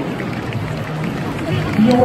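A stadium public-address announcer's voice echoing around the stands while the team line-up is presented, over background music and a low crowd murmur.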